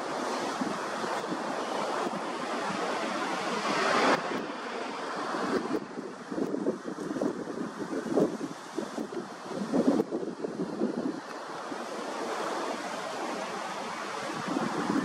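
Wind gusting over the camera microphone: a rough rushing noise that swells and dips, loudest about four seconds in.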